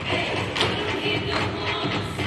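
Recorded music playing loudly, with metal-plated tap shoes striking a wooden stage floor among it; one tap stands out sharply about half a second in.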